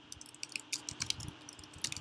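Computer keyboard keystrokes: a dozen or so quick, irregular, faint key taps as code is edited.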